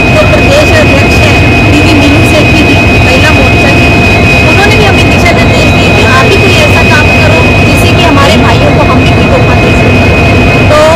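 Railway locomotive running at standstill: a loud, steady engine rumble with a constant high whine, and a woman talking under it.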